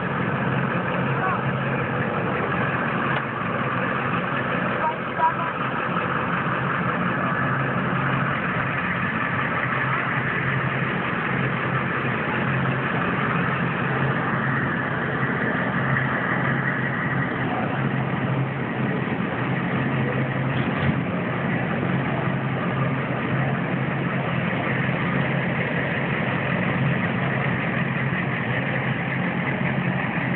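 A steady low engine hum, like a vehicle idling, under constant background voices, with a brief louder knock about five seconds in.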